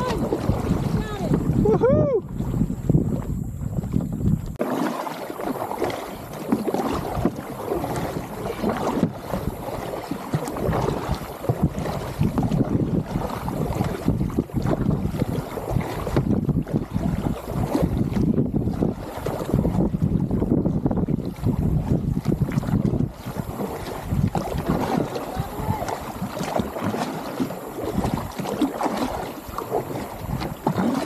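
Water rushing and splashing around a floating cooler towed behind a kayak as it ploughs through the river bow-down, with wind buffeting the microphone. After a sudden change about four and a half seconds in, kayak paddle strokes splash steadily in the water.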